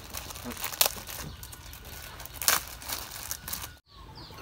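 Plastic wrapper of a pack of rice paper crinkling and crackling as it is handled, with two sharp louder crackles, one about a second in and one past the middle.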